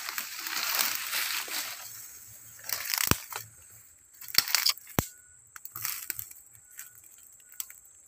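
Footsteps wading through deep mud and trampling swamp plants: a stretch of rustling, then separate steps about every second and a half, with a couple of sharp clicks.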